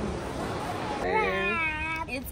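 Background music fading out, then about a second in a drawn-out, wavering voice lasting about a second.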